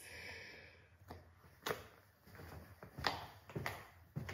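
Faint, slow hand claps from one person, single sharp claps spaced about half a second to a second apart.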